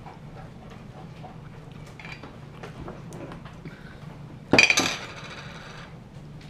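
A glass jar of olives clinks sharply once against a hard surface about four and a half seconds in, ringing briefly. Before that there are only faint small clicks over a low room hum.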